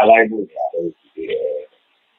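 A man's voice speaking in short phrases, then pausing near the end.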